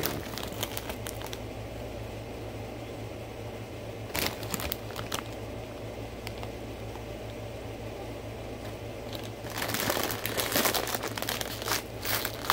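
A snack bag of Tapatio Hot Fries crinkling as it is handled. There are brief rustles near the start and again around four seconds in, then a longer, louder stretch of crinkling in the last couple of seconds as the top of the bag is gripped to open it.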